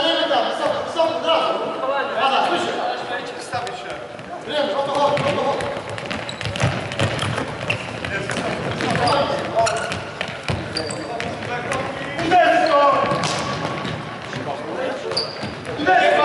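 Futsal being played on a wooden sports-hall floor: the ball is kicked and bounces repeatedly, with players' shouts and calls in the hall.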